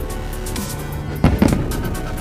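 Aerial fireworks bursting, with a quick cluster of loud bangs a little past a second in, over music playing.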